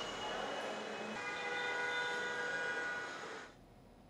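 Background noise with a steady chord of several held tones joining in about a second in, all fading out to near silence shortly before the end.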